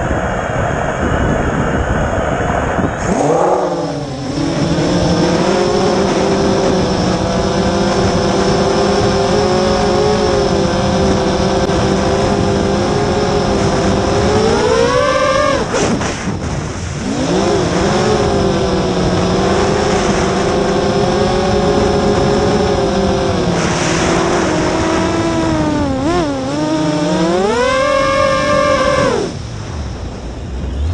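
Brushless motors of a 7-inch FPV quadcopter (T-Motor F40 Pro II 1600kv) whining in flight, heard through the onboard camera's microphone with wind noise on it. The motors spool up about three seconds in. Their pitch holds steady, rises sharply with throttle punches around halfway and again near the end, and drops briefly when the throttle is cut.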